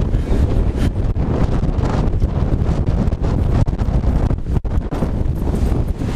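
Strong gusty wind buffeting the camera's microphone: a loud, low, unsteady rush that rises and falls with the gusts, dipping briefly about four and a half seconds in.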